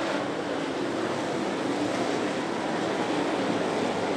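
Dirt late model race cars' V8 engines running at speed through the turns, blending into one steady drone whose pitch wavers slightly.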